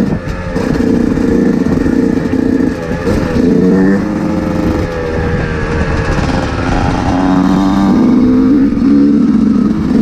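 Dirt bike engine running under way on a trail ride, its pitch dipping and rising several times as the throttle is rolled off and on.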